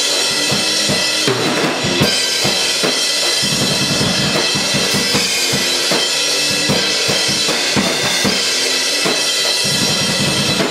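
A live band playing loud rap-metal: a drum kit keeps a steady beat with bass drum, snare and cymbals under an electric guitar played through a small amp, all filling a small basement room.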